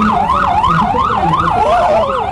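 Electronic emergency-vehicle siren in rapid yelp mode, its pitch sweeping up and down about four times a second.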